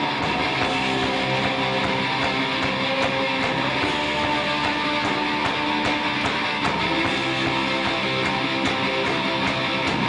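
Live rock band playing an instrumental passage with no vocals: electric guitars over drums and cymbals, at a steady loudness.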